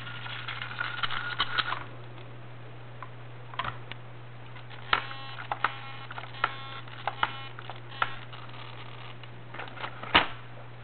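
Radio-controlled car's steering servo buzzing and chattering for the first couple of seconds, then twitching in short whirs and clicks every half second to a second. This is the servo shaking and glitching that the owner blames on low transmitter batteries.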